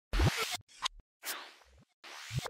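Logo-intro sound effects: three quick whooshes, the last one longer and fading out, with a short click near the middle.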